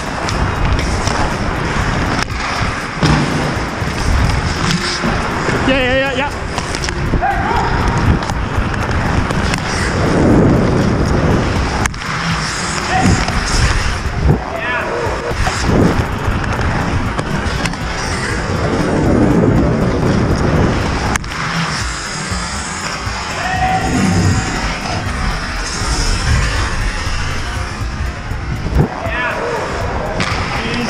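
Ice hockey play heard up close: skate blades scraping and carving on rink ice, sharp clacks of sticks and puck, and players' voices calling out.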